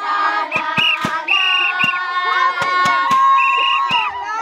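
A group of Zulu women and girls singing together and clapping their hands, with short high trilling calls breaking in over the singing again and again.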